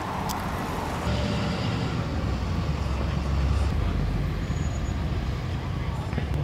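Low rumble of a motor vehicle on the street, growing louder about a second in and strongest around the middle, with faint voices.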